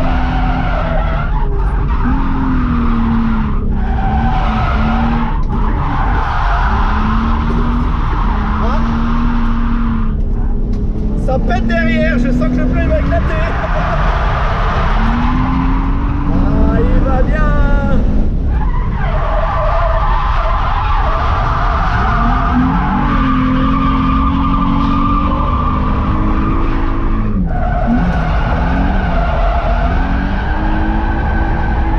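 Nissan 350Z's V6 engine revving hard from inside the cabin, its pitch rising and falling and cutting back briefly several times as the throttle lifts, while the tyres squeal through a drift.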